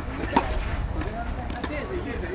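A tennis ball struck once, a single sharp pop about a third of a second in, with voices talking in the background.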